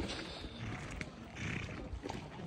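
Outdoor background noise without speech: an uneven low rumble with a faint haze above it.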